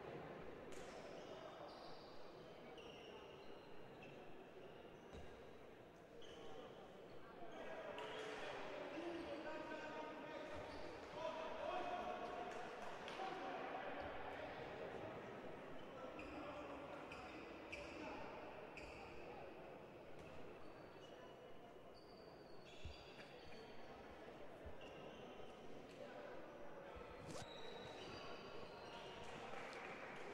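Faint, echoing chatter of many people in an indoor sports hall, swelling a little about a third of the way in, with occasional sharp knocks.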